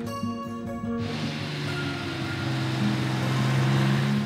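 Background music with long held notes. From about a second in, a broad rushing noise joins it and slowly grows louder.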